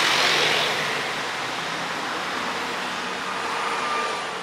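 Road traffic passing on a city street: a vehicle goes by with tyre and engine noise, loudest in the first second. It settles into a steady traffic hum.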